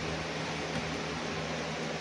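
Steady room noise: a low hum under an even hiss, with no distinct knocks or clicks.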